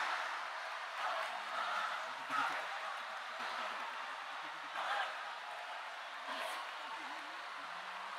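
Faint, indistinct voices of people praying quietly over a steady hiss of room noise.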